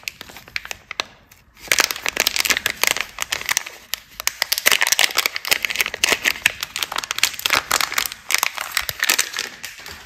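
Glossy plastic-film soap wrapper crinkling and crackling as it is opened and peeled off a bar of soap by hand. It starts after a quiet second or so and goes on in dense crackles until the bare bar is free near the end.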